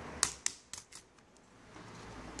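Toshiba NB550D netbook keyboard clips snapping loose as the keyboard is pried up with a flat plastic pry card: four sharp clicks within about a second, the first two the loudest.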